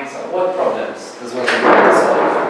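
A man talking, then a loud scraping noise about one and a half seconds in as a person gets up from a seat.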